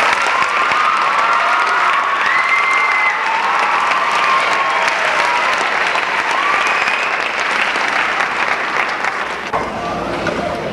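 Audience applauding steadily, with a few voices calling out over the clapping.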